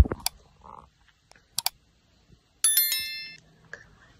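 Mouse-click sound effects, a few sharp clicks, the first the loudest, then a bright bell ding about two and a half seconds in that rings out for under a second. These are the sounds of a YouTube like, subscribe and notification-bell button animation.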